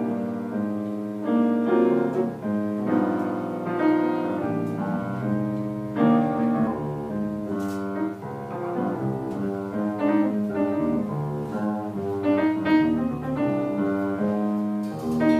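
Live small-group jazz led by a grand piano playing chords and melodic runs, with an electric bass underneath. The piano comes in with a loud chord at the very start.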